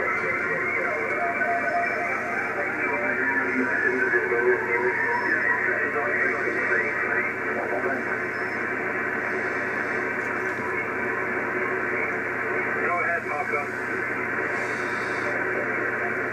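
Icom IC-756 transceiver's speaker playing 80-metre lower-sideband reception: a steady hiss of band noise with steady interference tones, and a station's voice faintly coming through in places. This is the electrical noise that the MFJ-1026 noise canceller is being switched in to remove.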